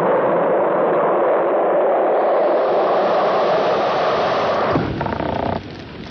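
Steady roar of a rocket engine on a film soundtrack, a spaceship in flight just after launch. Near the end it cuts to a short buzzing tone, then drops away.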